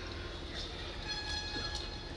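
Faint steady low hum and background noise from a public-address setup during a pause in a speech, with a few faint steady tones higher up.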